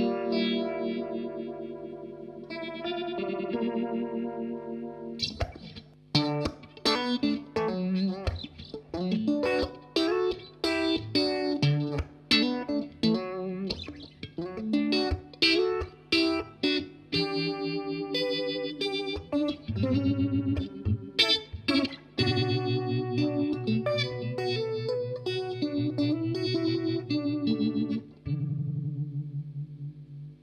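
Electric guitar, a Fender Stratocaster, played through a Rotovibe vibe pedal, its modulation speed set with the foot treadle. Held chords ring for the first few seconds, then comes a busier run of picked chords and single notes.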